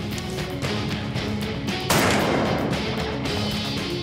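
A single loud shot from a .45-70 rifle about two seconds in, its echo dying away over about a second, over steady background music.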